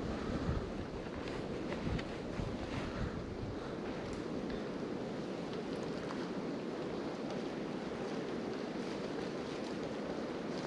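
Steady rush of wind on the microphone, with a few faint knocks in the first few seconds.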